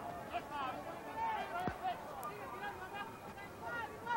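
Boxing crowd in the arena, many voices shouting and calling out over a steady hubbub, with one short dull thump a little under halfway through.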